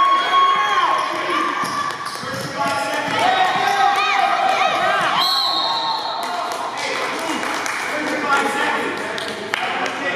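A basketball being dribbled and bounced on a gym's wooden court during a youth game, amid children's and spectators' voices and calls.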